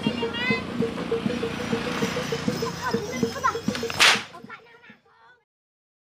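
Rope whip (pecut) crack, one very loud sharp crack about four seconds in, over children's shouts near the start and a fast, even pulsing tone; the sound fades out and stops soon after the crack.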